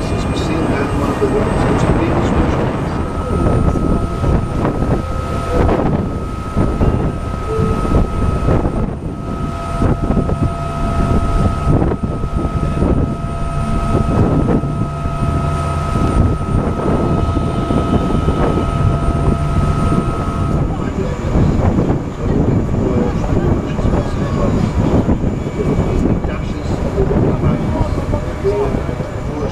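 Tour boat under way at speed: a steady engine drone with wind buffeting the microphone and wake water rushing along the hull. A steady high whine runs through the middle and stops about two-thirds of the way in.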